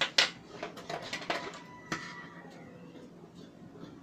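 Scissors and small tools being picked up and handled on a table: a quick run of knocks and clicks, the loudest just after the start, with a brief metallic ring around two seconds in, then quieter.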